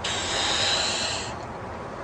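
A rush of breath, hissing, while a balloon is being blown up by mouth; it starts suddenly and stops after just over a second.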